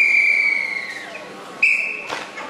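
Referee's whistle at a karate kata match: one long blast of about a second, sinking slightly in pitch, then a second short blast near the end, calling the judges' flag decision.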